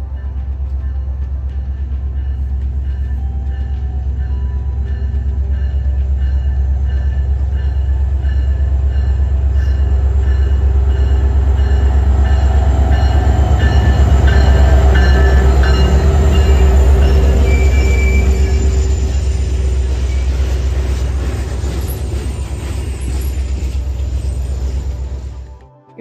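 An Alaska Railroad diesel-electric locomotive hauling a passenger train along the platform, with a deep engine rumble. The rumble builds as the train approaches, is loudest about halfway through as the locomotive passes, then eases as the passenger cars roll by, and cuts off abruptly near the end.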